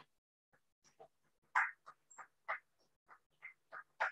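Scattered hand clapping from a few people, irregular at about three claps a second, with dead silence between claps as heard through a video call's audio.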